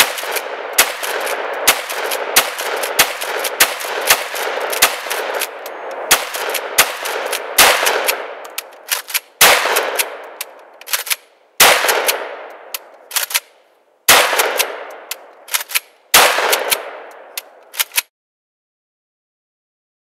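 UTS-15 12-gauge pump-action bullpup shotgun firing a string of shots, with lighter clacks of the pump action between them. The first shots come quickly, under a second apart, then four spaced shots each trail a long echo. The sound cuts off suddenly near the end.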